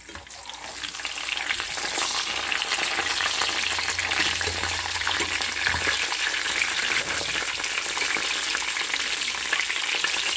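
Eggs frying in shallow oil in a skillet: the oil sizzles and crackles steadily, swelling over the first second or two.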